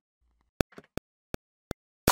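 Metronome count-in on an Akai MPC X: four evenly spaced sharp clicks, a little under three a second, with silence between them.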